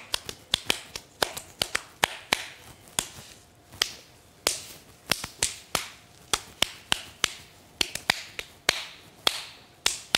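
A rapid, irregular series of sharp clicks and snaps, about two to three a second.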